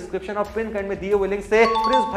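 A man talking, and about one and a half seconds in a two-note ding-dong chime sound effect, a higher note followed by a lower one, rings over the speech.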